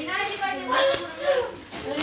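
People talking, with no clear words: a steady run of voices throughout.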